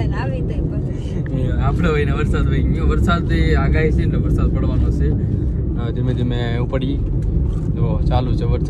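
Steady rumble of a car's engine and road noise heard inside the moving car, with people talking over it now and then.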